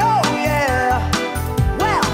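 Reggae-style cover song: a woman singing a melody over a steady bass line, drums and backing instruments.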